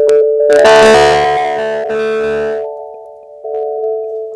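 Computer-generated tones from a data sonification of bank-transaction time series, with a different tone for each transaction category: several pitched notes start sharply and ring on, overlapping. A loud note comes in about half a second in and fades by about three seconds, and quieter tones enter near the end.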